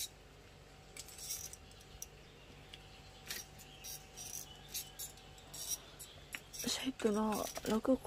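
Faint, scattered sharp ticks and crackles over a low steady hum, then a person speaking near the end.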